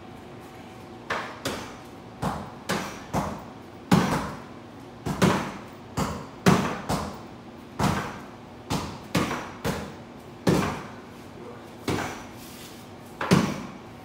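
Repeated punches landing on hand-held striking pads and a wooden makiwara board, about twenty sharp thuds at an uneven pace of a couple a second, starting about a second in.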